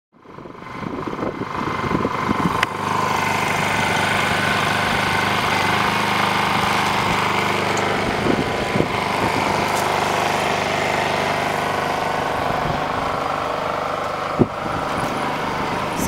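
A motor running steadily, fading in from silence at the start. A short sharp knock comes about two and a half seconds in, and another near the end.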